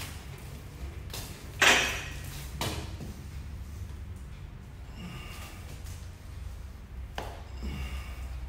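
A man's forceful exhales of effort during barbell squat reps. There are three short breaths, the loudest about a second and a half in and the last near the end, over a steady low hum.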